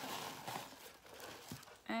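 Hands rummaging through a subscription box's packing, a faint rustle of paper and packaging with a couple of soft knocks.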